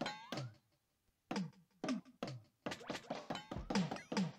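Roland SPD-20 electronic percussion pad struck with drumsticks, triggering electronic drum sounds in a sparse, uneven pattern of about a dozen hits. Each hit carries a low tom-like pitch that drops, and a rising pitched sweep rings after the first hit. There is a short pause about a second in.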